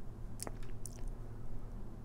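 Quiet room hum with a few faint, short clicks.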